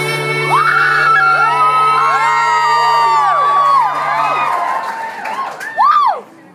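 The last chord of a live acoustic guitar song rings out and fades about four and a half seconds in. Over it, audience members whoop and cheer with high, rising-and-falling shrieks.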